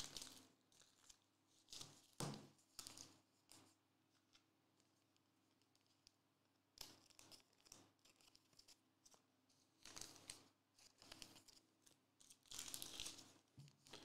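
Near silence with faint scattered handling noises: a few light ticks, then near the end a brief crinkle of thin plastic as a trading card is worked into a clear sleeve.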